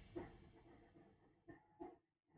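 Near silence: room tone with three faint, brief sounds, the first just after the start and two near the end.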